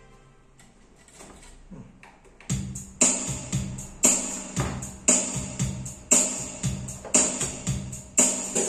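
Yamaha PSR-730 arranger keyboard playing a built-in drum rhythm through its own speakers. The rhythm starts about two and a half seconds in, with a strong beat about once a second and lighter hits between.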